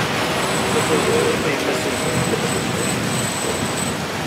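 Steady background noise of road traffic, an even rumble and hiss with a faint high whine coming and going.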